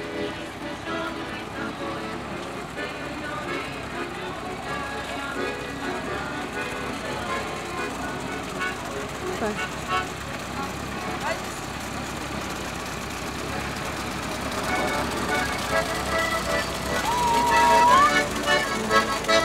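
Street parade mix of voices, music and a slow-moving GAZ-67B army jeep's engine. Near the end the jeep comes close and an accordion played aboard it grows louder.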